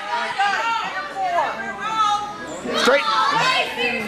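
Overlapping voices of people watching the match, shouting and chattering over one another, busiest in the first second and a half and again near the three-second mark.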